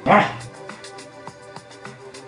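A dog gives one short bark at the start, answering a spoken command to 'speak'; then light background music with a regular beat carries on.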